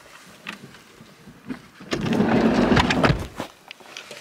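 Camera handling and fabric rustling: a few light knocks, then a loud rumbling rustle about two seconds in that lasts about a second and a half.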